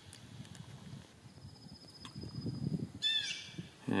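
Faint low rustling, then about three seconds in a short animal call that falls in pitch; a faint thin high buzz sounds briefly around the middle.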